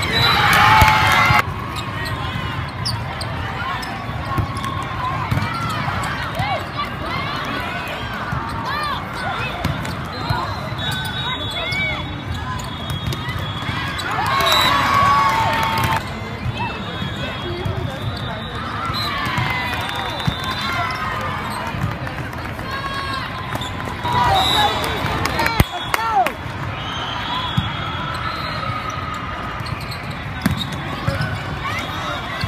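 Indoor volleyball play in a large reverberant hall: many short sneaker squeaks on the court, volleyballs being struck and bouncing, and a constant hubbub of player and spectator voices. Louder bursts of voices and shouting come right at the start, around the middle and near the end.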